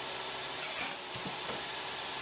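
SawStop jobsite table saw running with its blade spinning, a steady whine as a board is ripped against the fence, with a few faint knocks around the middle as the back of the blade grabs the board and throws it back in a kickback.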